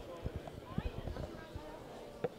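Irregular light knocks and clicks from a metal swerve drive module being handled and turned over in the hands, over faint background chatter.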